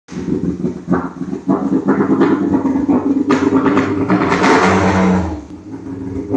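Tuned VAZ 2102's four-cylinder engine running loud and uneven through a side-exit exhaust, with repeated throttle blips. The revs are held up from about four seconds in, then fall back near the end. This is the freshly built engine's first run.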